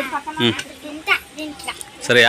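Children's voices talking, fairly quiet, with a few short sharp sounds among them.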